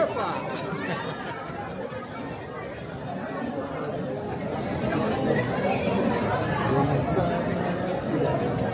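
Chatter of many passers-by's voices in a busy pedestrian street, no single voice standing out; it dips a couple of seconds in and grows louder again in the second half.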